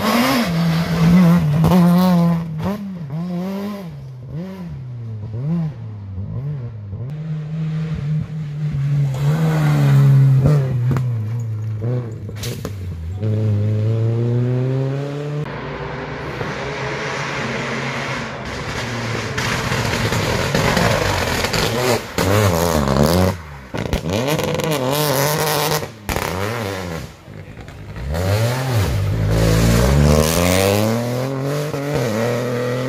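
Rally cars at full stage pace, their engines revving hard and falling in pitch over and over as they shift gears. A Renault Clio rally car passes first. Then a Peugeot 208 rally car climbs up through a hairpin and passes close by, loudest near the end.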